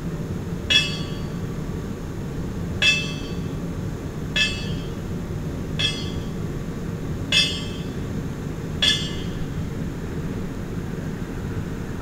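A bell struck slowly with single strokes, six in all, about a second and a half apart, each ringing briefly before the next. The strokes stop about nine seconds in, over a steady low rumble.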